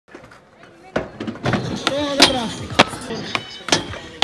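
Skateboard clacks and knocks, a string of sharp irregular hits starting about a second in, with voices calling out over them.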